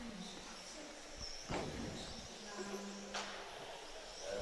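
Faint hall ambience with distant, indistinct voices.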